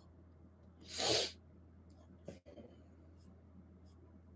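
A short, breathy puff of air from a man, like a sniff or a sharp breath through the nose, about a second in, then a faint click, over otherwise quiet room tone.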